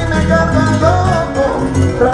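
Live salsa music from a band with orchestra, a steady bass line under melodic lines.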